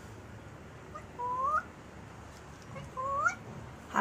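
African grey parrot making two short rising calls, the first about a second in and the second about a second and a half later.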